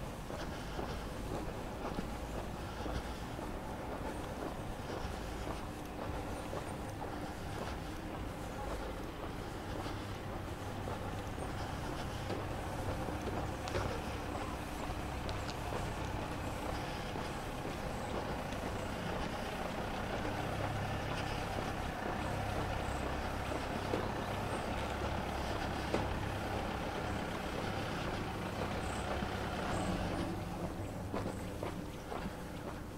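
A few cars driving by on a quiet street, their engines and tyres making a steady low rumble that grows louder in the second half.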